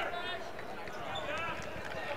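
Basketball game in play on a hardwood court, heard faintly through the arena's ambience: a few short gliding squeaks, typical of sneakers on the floor, and distant voices.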